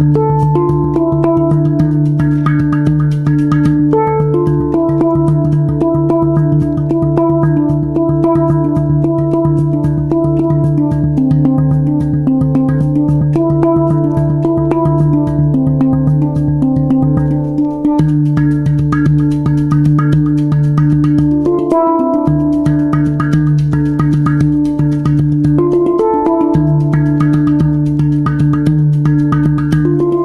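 Hang (handpan) played by hand: a slow melody of ringing steel notes over a steady low tone. The low tone breaks off briefly a few times in the second half.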